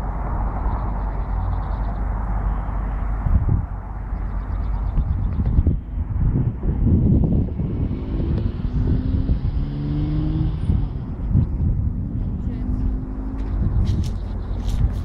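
Roadside ambience with a steady low rumble: traffic passing on the road, louder in the middle of the stretch, with faint voices of people talking nearby.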